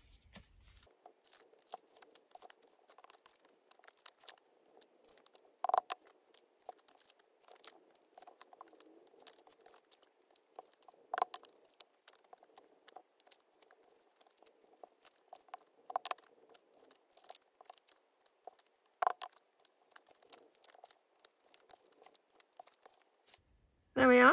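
Faint paper and card being handled and folded on a table, a steady light rustling with many small clicks, in fast motion. A few sharper taps stand out, spread through the stretch.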